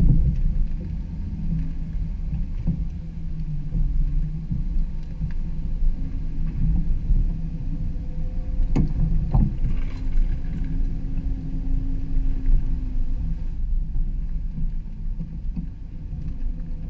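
A motorhome on the road towing a car behind it: steady low engine and road rumble, with two sharp clicks about nine seconds in.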